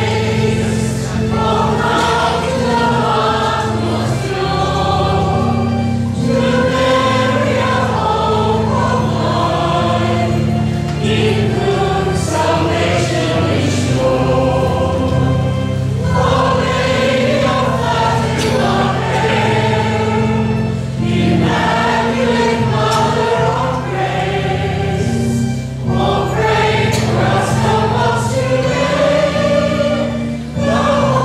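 Choir and congregation singing the recessional hymn over sustained organ accompaniment, in phrases a few seconds long with short breaks between them.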